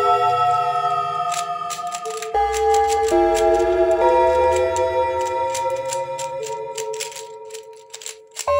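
Background music: sustained keyboard chords over a bass line with light ticking, the chords changing every second or two and the music fading out near the end.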